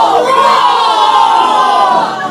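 Three women yelling "Fall!" together in one long, drawn-out shout that slowly sinks in pitch and dies away at the end.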